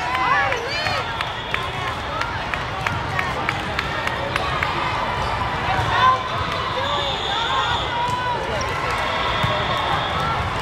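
Busy volleyball tournament hall: a steady din of many voices, with sneakers squeaking on the court floor and volleyballs being struck and bouncing, several short sharp knocks from different courts. A louder thump stands out about six seconds in.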